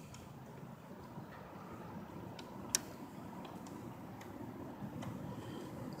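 Hands handling a radio-controlled floatplane model: a few light ticks and one sharp click a little under three seconds in, over faint steady background noise.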